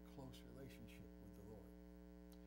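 Steady electrical mains hum, a low drone with many even overtones, with a man's quiet speaking voice over it that stops shortly before the end.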